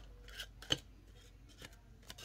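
Paper banknotes being peeled off and counted by hand: a few crisp snaps and rustles of paper, the sharpest a little under a second in.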